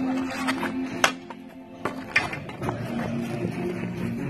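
Background music with a sharp clack about a second in, a street hockey stick striking the ball, and two more knocks about two seconds in.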